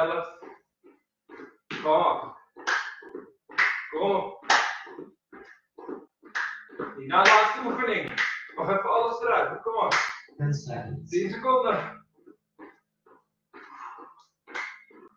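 A man's hands clapping about once a second as he jumps.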